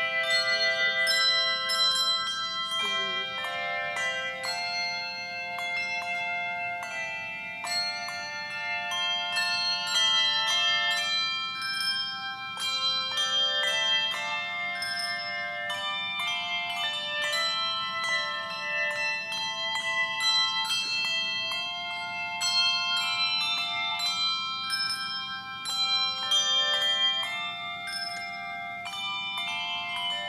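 A handbell choir playing a piece of music. The bells are struck one after another and in chords, and each note rings on and overlaps the next.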